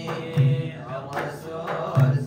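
Sudanese madih (praise song for the Prophet Muhammad) sung by a group of male voices in a chanting style, accompanied by hand-held frame drums and hand clapping. Deep drum strokes land about half a second in and again at the end.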